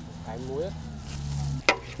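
Cooked noodles, shrimp and vegetables being tossed and mixed in a large aluminium basin with long-handled utensils: a soft, wet rustling, with a single sharp knock of a utensil on the basin near the end.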